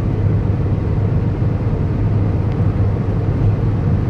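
Steady road and engine noise inside a moving car's cabin, with a strong low hum.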